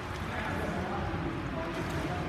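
Swimmer splashing through a front-crawl stroke in an indoor pool, over a steady noisy background with faint voices.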